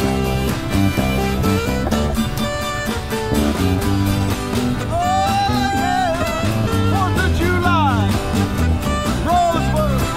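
Live band music led by a strummed acoustic guitar over a steady bass line. From about halfway through, a melody line with strong pitch bends comes in over it.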